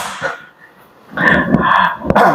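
A man clears his throat once, about a second in, in a short noisy burst.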